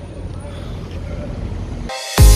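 Steady low rumble of city street traffic, with a faint drawn-out tone in the middle. Music starts suddenly at the very end.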